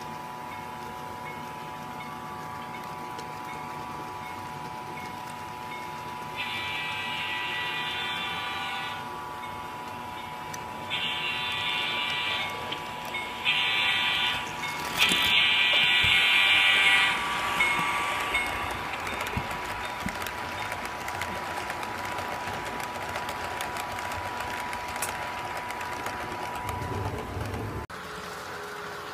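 An HO scale model diesel locomotive's sound system blows its horn in a long, long, short, long pattern, the grade-crossing signal. A steady hum from the locomotive runs underneath.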